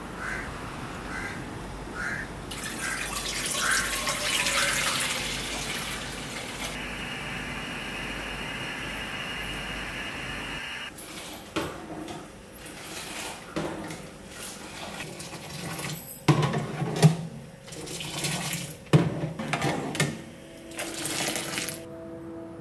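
Water running steadily for several seconds, like a kitchen tap. After it stops, metal utensils clink and knock against a steel pot on a stove, with the loudest clanks near the end.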